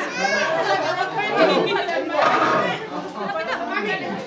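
Chatter: several people talking at once, voices overlapping.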